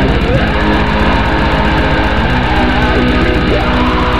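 Black metal music: distorted electric guitars over fast, evenly pulsing drums, dense and steady throughout.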